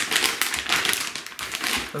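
Clear plastic vacuum-sealer bag crinkling and rustling irregularly as it is handled around a raw steak.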